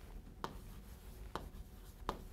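Chalk writing on a chalkboard: faint scratching strokes, with two sharp taps of the chalk about half a second in and again about a second later.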